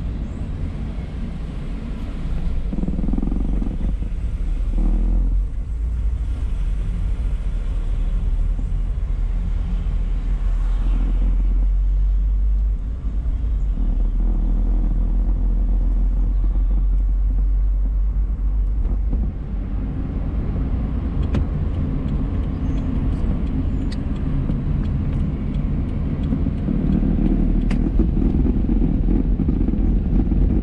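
A moving car's engine and road noise heard from inside the cabin: a steady low rumble that swells and eases a little as the car drives on.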